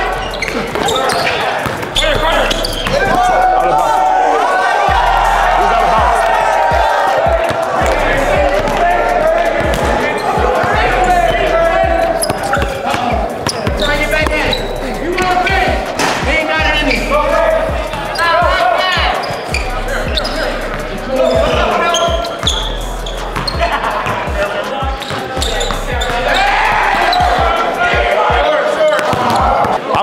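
A basketball dribbled and bouncing on a gym's hardwood floor, with players and onlookers shouting and talking throughout in a large, echoing hall.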